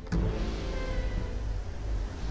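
Yacht under way: a steady low rumble and rushing noise, with a faint high whine that comes in briefly mid-way.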